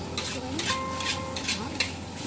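Metal spatula scraping and clanking against a steel wok as fried rice is stir-fried, about four strokes a second, the loudest near the end, with the rice sizzling underneath.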